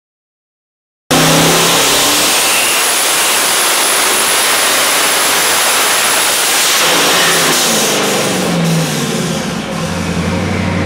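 427 cubic-inch twin-turbo small-block Chevy engine on a dyno, cutting in suddenly about a second in at wide-open throttle, near 6,400 rpm and making about 1,170 hp, with a high whine over it. About seven seconds in the throttle closes and the engine winds down, falling in pitch toward idle.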